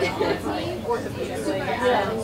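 Indistinct chatter: several people talking at once in a room, with no single clear voice.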